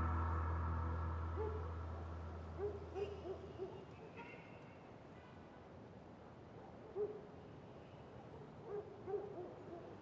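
Faint owl hooting: short hoots in small clusters, a group a few seconds in and another near the end. Under the first hoots, a low music drone fades out over about the first three seconds.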